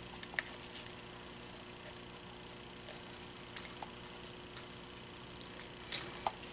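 Faint handling of electrical wires: small scattered clicks and rustles as the fan's red motor-winding wire is joined to a cord lead, with a sharper click near the end, over a steady low hum.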